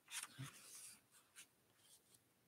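Near silence with a few faint, brief rustles of paperback book pages being handled in the first second, and a tiny tick a little later.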